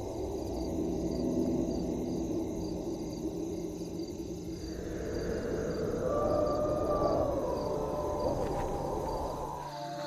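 Atmospheric intro of a pop mashup: a low rumbling drone with a hiss of noise over it. About halfway through, a wavering howl-like tone rises and falls.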